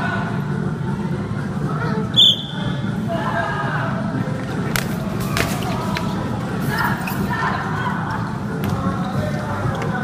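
Bubble-football game noise in a large hall: indistinct voices over a steady low hum, with a short, high whistle blast about two seconds in. A few dull thuds follow around the middle, typical of bubbles colliding or the ball being kicked.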